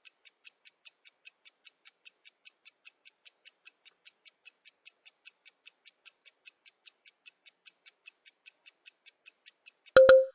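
Countdown timer sound effect ticking like a clock, about four short, high ticks a second, steady throughout.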